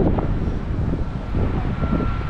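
Wind buffeting the camera's microphone: an uneven low rumble.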